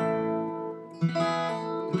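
Acoustic guitar strumming an E minor chord and letting it ring, with a fresh strum about a second in.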